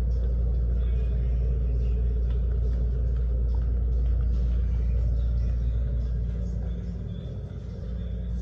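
Steady low rumble of supermarket background noise with faint music playing over it, dipping briefly near the end.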